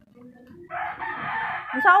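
A rooster crowing: one call of about a second, starting a little way in.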